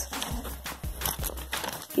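Rustling handling noise with scattered light clicks as the camera is picked up and moved and the plastic Lego pieces are shifted about.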